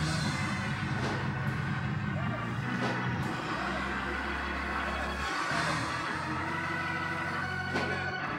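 Church organ holding sustained chords under the service, its low bass notes shifting every second or two, with faint voices from the congregation.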